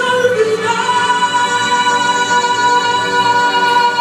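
Female vocalist singing live into a handheld microphone with musical accompaniment; under a second in she settles onto one long, steady held note.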